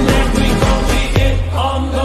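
Slowed-down dance-pop track with a steady beat; the drums drop out a little past a second in, leaving held notes over a low bass.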